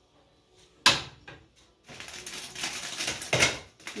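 A metal spoon set down with a sharp clack about a second in, then about two seconds of crinkly rustling and light clatter as things on the kitchen counter are handled.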